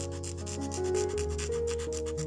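Shaving blade scraping laser-printer toner off the surface of paper in rapid, evenly repeated strokes, over background music with slow held notes.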